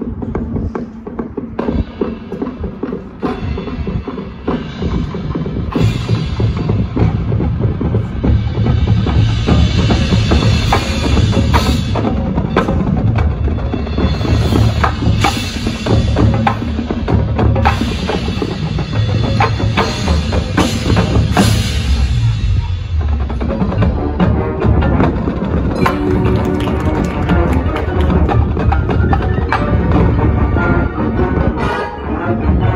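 Marching band with its front-ensemble percussion playing the opening of its competition show, with many sharp percussion strikes over the winds. The music swells about six seconds in and eases briefly near the three-quarter mark before building again.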